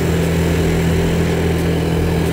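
Quad bike engine running steadily while the bike is under way, with a rushing of wind and road noise over it.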